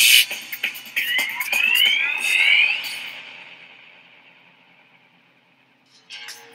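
Intro music sound effects: a loud burst of noise at the start, then a rising whistle-like sweep of several tones that fades away to near silence.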